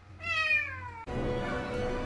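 A kitten meows once, a single call that falls in pitch and lasts under a second. About a second in, background music starts abruptly.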